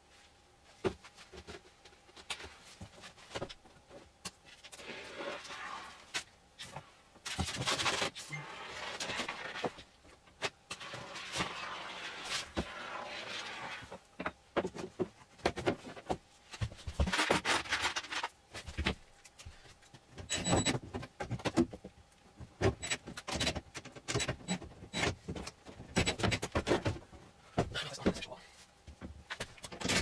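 Hands-on work at a van's sheet-metal wall: many sharp knocks, clicks and scrapes of boards being handled and pressed into place, with stretches of hiss in the first half.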